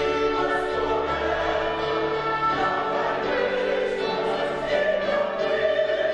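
Mixed church choir singing in long held chords, with instrumental accompaniment.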